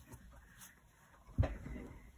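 A single knock on the craft work surface about one and a half seconds in, among faint handling sounds as a card strip is moved across a grid mat.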